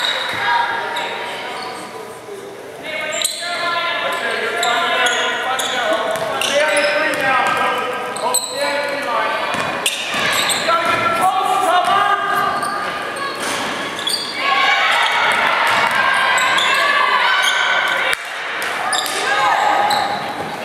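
Basketball game in a gymnasium: a ball being dribbled and bouncing on the hardwood floor while players and spectators call out and shout, the sound echoing around the hall.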